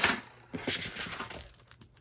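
Clear plastic bag crinkling and rustling as a diamond painting canvas is slid out of it: a louder crinkle at the start, then fainter, irregular rustles.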